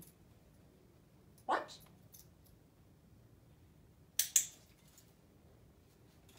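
A handheld dog-training clicker clicked about four seconds in: two sharp, quick clicks a fraction of a second apart, marking the puppy's eye contact.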